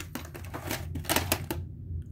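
Rapid plastic clicks and rattles from a VHS clamshell case being handled and the cassette lifted out of it, stopping about three quarters of the way through.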